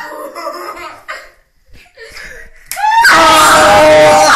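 Children's voices laughing, then about three seconds in a sudden, very loud burst of shrieking and laughter: the reaction to the loose tooth being yanked out by the slammed door.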